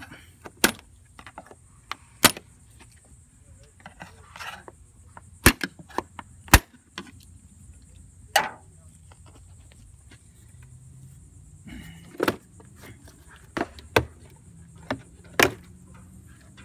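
Sharp clicks and snaps of the air-filter box's clips and plastic lid as they are pried loose with a flat-head screwdriver. There are about ten scattered clicks, the two loudest close together about halfway through.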